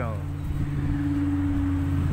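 Jet boat engine running with a steady hum that grows louder as the boat pulls away from the jetty.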